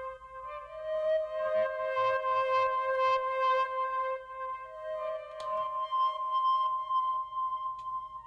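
A beat playing back from an Akai MPC One+: a long held, flute-like synth note with its overtones and a few faint clicks. It is run through the AIR Distortion effect with only a light amount of drive.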